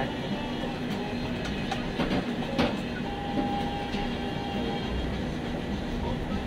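Damp cloth wiping and rubbing around the base of a metal pole, over a steady background hum, with a couple of light knocks around two and a half seconds in.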